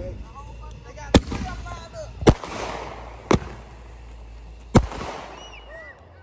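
Aerial fireworks bursting: four sharp bangs roughly a second apart, with a crackling hiss after the second.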